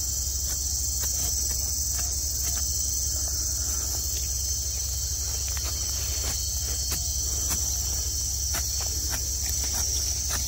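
A continuous high-pitched drone of insects, with a steady low rumble underneath and scattered faint clicks.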